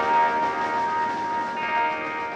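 Electric guitar ringing out through effects pedals in a sustained, bell-like drone, with one steady high feedback note over a cluster of held tones that slowly fade. A new, higher set of tones comes in near the end.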